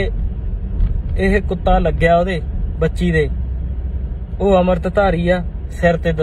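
A man talking in Punjabi inside a car, over a steady low rumble of car cabin noise.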